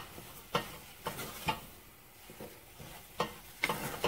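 Wooden spatula stirring and pressing thick choux pastry dough for cream puffs in a stainless steel saucepan, with irregular knocks and scrapes against the pot and a quieter stretch in the middle.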